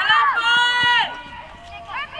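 Shouting on a football pitch: a long, high-pitched held call in the first second, with shorter shouts around it.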